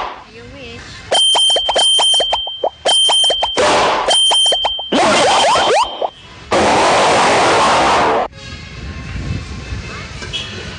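Cartoon sound effects: a steady high chime broken by rapid clicks for a few seconds, then quick rising boing-like sweeps and a loud hiss-like burst lasting about two seconds.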